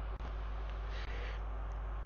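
A pause in speech holding only the recording's steady low hum and background hiss, with a faint brief hiss about a second in.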